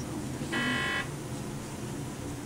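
A single electronic beep from hospital monitoring equipment, a steady tone about half a second long starting about half a second in.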